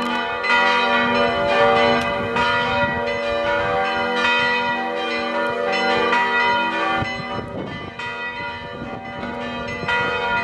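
Cathedral church bells pealing: several bells struck again and again, their ringing tones overlapping into a continuous peal that gets a little quieter in the last few seconds.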